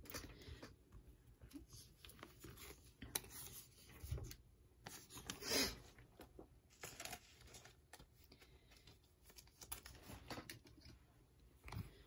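Faint handling of trading cards and clear plastic card stands on a tabletop: scattered light clicks and rustles, the loudest a brief rustle about halfway through.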